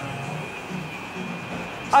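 Steady whirr of the altitude chamber's air-handling and heating plant, a constant rushing hum with a thin high whine running through it.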